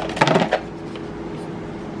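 Short clatter of drone parts and plastic packaging being handled on a table, about a quarter second in, as the drone's battery is picked up, then a faint steady hum.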